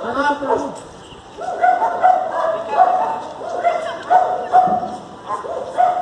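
A dog barking repeatedly in short, evenly pitched barks, with a person's voice exclaiming near the start.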